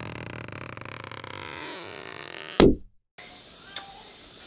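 Channel intro sound effect: a soft, steady tone bed, then a sudden low hit about two and a half seconds in that drops in pitch and cuts off to silence.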